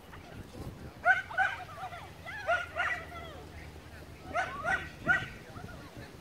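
A beagle barking in short, high yips while running an agility course, in bunches of two and three, about seven in all.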